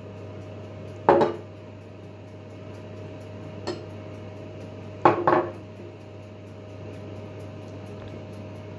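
Small ceramic bowl knocked by a silicone basting brush as paprika is stirred into oil: a sharp clink about a second in, a lighter one midway and two in quick succession a little past halfway, over a steady low hum.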